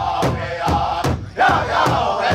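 Powwow drum group singing a women's traditional contest song: men's voices in unison over a large shared drum struck together, about four beats a second. A short break comes a little past halfway, then drum and voices come back in loudly.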